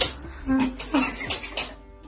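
Short grunts and brief voice sounds from two people play-wrestling, with a few quick scuffling noises, over background music.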